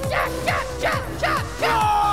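Music with a steady beat and short falling whoops about every 0.4 s, ending in a long held note that slowly sinks in pitch.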